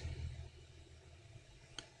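Quiet room tone with one faint click of a computer mouse near the end.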